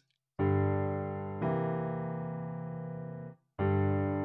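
Piano playing a C7 chord (C, E, B flat), struck about half a second in, with a further note added a second later and the sound slowly fading. The chord is released shortly before the end and another is struck.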